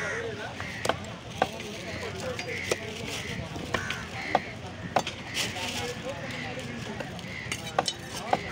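Large steel cleaver chopping fish into chunks on a wooden stump block, with a sharp knock about every second at an uneven pace.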